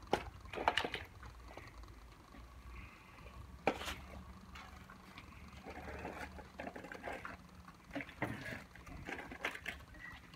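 Faint sloshing and splashing of water in a plastic bucket, with scattered light knocks.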